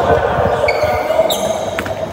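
Badminton rally on an indoor court: players' footsteps thudding on the court floor, a brief shoe squeak about a second and a half in, and a sharp racket-on-shuttlecock hit near the end.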